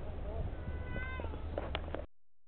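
A brief mewing animal call, one held note that drops in pitch at its end, over a steady low rumble of wind on the microphone, with a few sharp clicks near the end.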